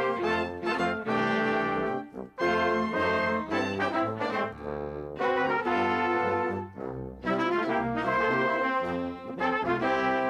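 Instrumental theme music for a children's music TV programme, with brass to the fore, played in phrases with short breaks about two seconds in and again near seven seconds.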